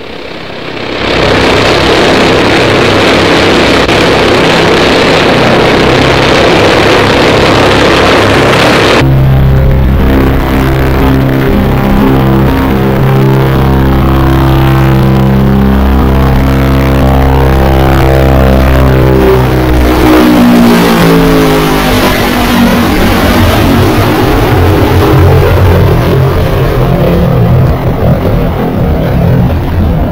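Convair B-36 Peacemaker's six piston engines and four jets at full power on the takeoff run: a loud steady roar that changes abruptly about nine seconds in to a deep droning of propeller tones. Around twenty seconds in, the tones slide down in pitch together as the bomber passes.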